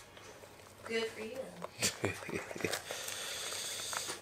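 A few faint, sharp clicks of a small hand tool working the bolts of a cleat on a cycling shoe's sole as it is tightened, with a brief low voice about a second in.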